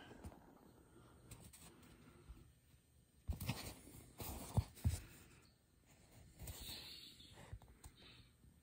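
Fingers rubbing and scratching across the fabric top cover of a foam shoe insole and squeezing its foam edge, a soft scratchy handling noise. The loudest stretch comes about three to five seconds in, with a few short soft knocks as the insole is handled.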